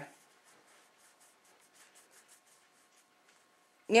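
Faint, light rubbing strokes, about four a second, from hands moving over a metal nail-stamping plate; they fade out about three seconds in.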